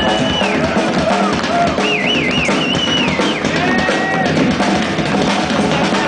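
Live blues band playing the groove on electric guitars, bass and drum kit, with a high lead line of long held notes that waver and bend in the middle.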